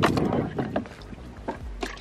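Water splashing and sloshing in a child's plastic water table as a toddler scoops with a toy cup, loudest at first, then a few short splashes and knocks.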